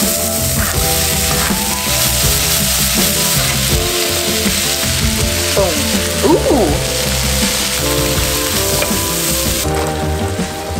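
Diced onions frying in oil in a pan: a steady sizzle that cuts off just before the end, under background music.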